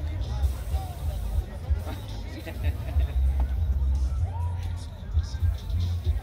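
Car audio system playing music with heavy, pulsing bass from a box of three 10-inch Carbon Audio subwoofers driven by a JL Audio amplifier, heard from outside the car, with crowd chatter behind it.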